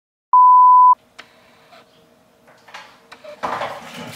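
Edited-in censor bleep: one loud, steady beep about two-thirds of a second long, cut in sharply after a moment of dead silence. It is followed by a few faint clicks.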